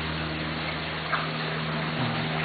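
Fountain water splashing steadily, with a low steady hum underneath.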